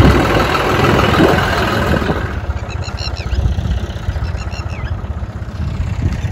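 A tractor's diesel engine running as the tractor drives over a tilled field. It is loud for about the first two seconds and then quieter, with faint short high chirps over it in the second half.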